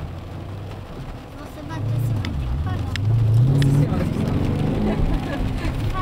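Dodge Challenger R/T's 5.7-litre V8 heard from inside the cabin under hard acceleration. Starting about a second and a half in, the engine gets louder and rises in pitch, dips once, then climbs again and stays loud.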